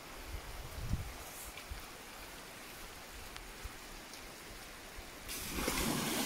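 River water running as a steady hiss, with a few faint low knocks; about five seconds in a much louder rush of water noise sets in.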